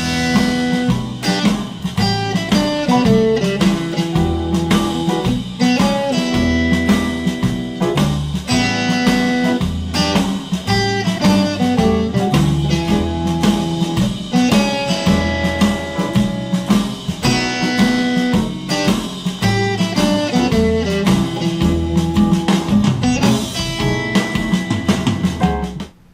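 Fender Telecaster electric guitar repeating a simple blues riff in E on the open and low-fretted top strings, over a swing blues backing track with drums and bass.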